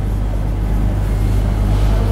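Steady low hum, with faint scratching from a marker writing on a whiteboard.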